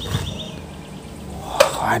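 Mud-caked toy trucks being pushed together across a tray, with one sharp knock about a second and a half in over low background noise.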